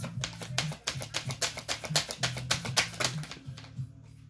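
A deck of tarot cards shuffled by hand: a rapid run of flicking clicks as the cards fall from hand to hand, thinning out near the end. Background music with steady low notes plays underneath.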